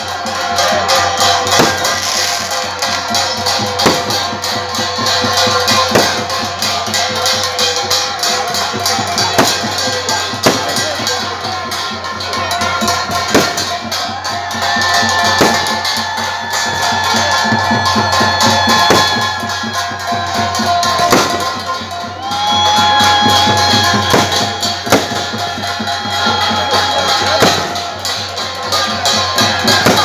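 Live festival percussion: drums and jingling percussion played continuously over a crowd, with a heavy strike about every two seconds and long held high tones over the top.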